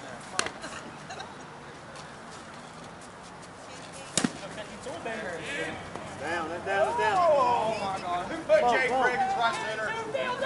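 A single sharp crack about four seconds in, the loudest thing heard, then several softball players shouting and calling across the field over the second half.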